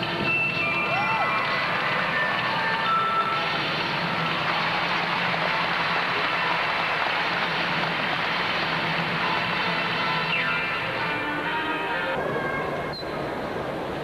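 Arena sound of a gymnastics competition. Music carries on for the first few seconds, then a loud, even wash of crowd noise fills the hall. About twelve seconds in, the sound drops and changes abruptly.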